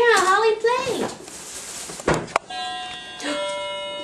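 A high, wavering voice in the first second, then a click. From about halfway, a toy electronic keyboard sounds held electronic notes as a three-week-old Border Collie puppy stands on its keys: one note, then a second that holds, making an interval called a perfect fourth.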